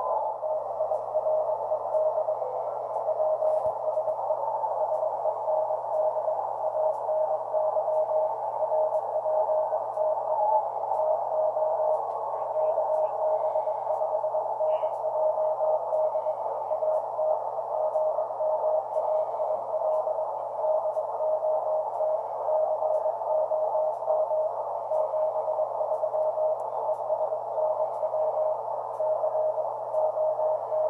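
Weak Morse code (CW) signal received on the 630-metre band by a Kenwood TS-570D transceiver: a single keyed tone sounding out dots and dashes through a steady band of static, with a low steady hum underneath.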